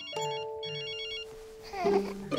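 Telephone ringing with a high, trilling ring in a quick double burst, ring-ring.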